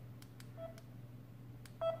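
Samsung Galaxy A40 smartphone's touch sounds as the screen is tapped: a few faint clicks and two short beeps, the louder one near the end.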